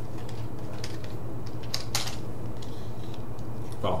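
Light plastic clicks and knocks as a VDSL faceplate is pulled off an NTE5 telephone master socket, the sharpest couple about halfway through, over a steady low hum.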